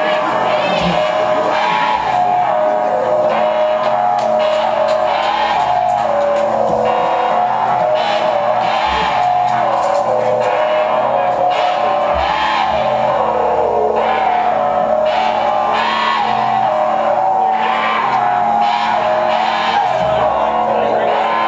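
Live rock band playing loud electric guitars, bass and drums, a dense, unbroken wall of sound with a steady driving rhythm.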